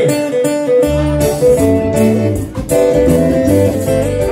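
A live band's instrumental intro: a guitar melody, joined about a second in by bass and drums.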